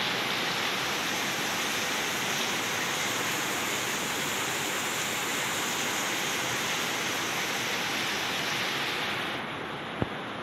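Steady rain falling on garden plants, an even hiss that drops in level near the end.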